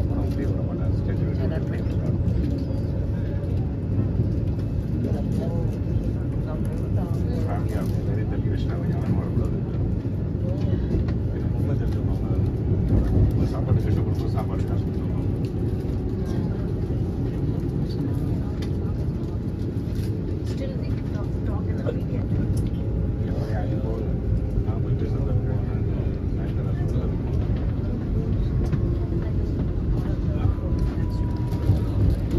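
Vande Bharat Express train running, heard inside the coach: a steady low rumble with scattered faint clicks.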